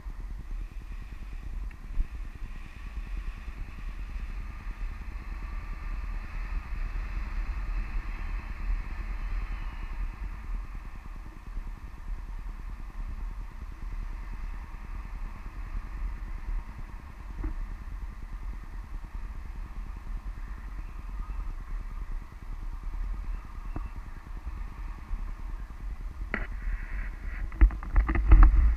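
Wind buffeting the microphone of a hand-held camera in paragliding flight: a steady low rumble with a fainter rushing hiss above it. A few sharp knocks come near the end.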